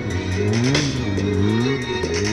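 Music playing over a sport bike's engine, which revs up and drops back several times as the throttle is worked to hold a wheelie.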